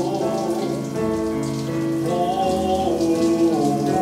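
A running shower sprays steadily while a man sings long, held wordless notes with a wavering vibrato over a musical accompaniment.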